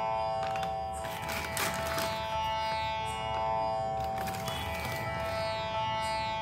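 Background instrumental music: plucked string notes over a steady sustained drone.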